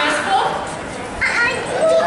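Children's voices, with high-pitched calls and chatter, in a large indoor public space. A long high-pitched call begins near the end.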